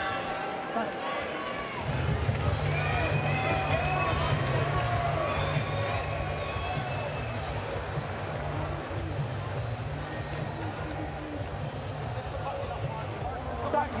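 Arena crowd noise with voices and shouts. About two seconds in, music with a heavy bass beat starts up and runs on under it.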